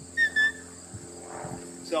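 Two short, high pips on a shepherd's herding whistle, the whistled signal telling a sheepdog to walk up on the sheep. Crickets chirp steadily underneath.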